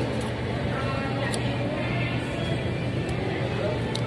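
Restaurant room noise: a steady low hum under distant diners' chatter and faint background music, with a couple of light clicks.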